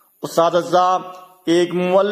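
A man's voice reciting a speech in Urdu, with long, drawn-out vowels held at a steady pitch, a short pause, then speaking again.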